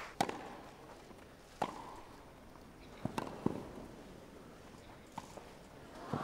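Tennis rally on a grass court: sharp pops of the ball coming off the racquet strings and bouncing, roughly every one and a half seconds, over a hushed crowd.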